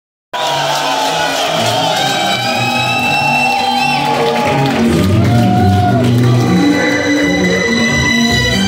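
Loud live music filling a concert hall, with the crowd shouting and cheering over it. Sliding, wavering high notes run through the first half.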